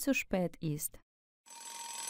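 Alarm clock bell ringing, starting about one and a half seconds in and still going at the end.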